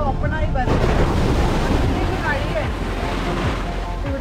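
Sea surf rushing and washing onto the shore, with wind on the microphone. The rush of the waves swells up about a second in and stays dense, with a voice talking over it at times.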